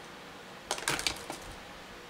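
A short clatter of small hard craft items being rummaged through and knocked together, a quick run of clicks and rattles about a second in, against a quiet room.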